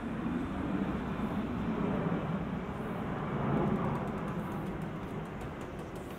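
Street traffic noise with a vehicle going by: a steady rush that swells to its loudest a little past the middle and then eases off.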